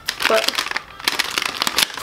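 Clear plastic packaging crinkling and rustling in the hands as a wrapped part is turned over, a run of quick irregular crackles.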